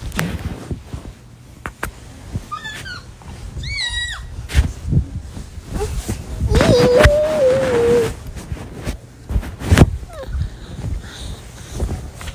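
A phone's microphone knocking and rustling against bedding as it is handled, with a few short high squeaks about a third of the way in. A drawn-out, voice-like tone a little past the middle is the loudest sound.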